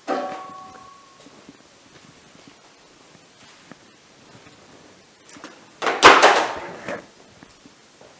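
A sharp metal knock with a brief ringing tone, then quiet, then a louder metallic clatter lasting about a second, about six seconds in, as parts of a sawmill are handled.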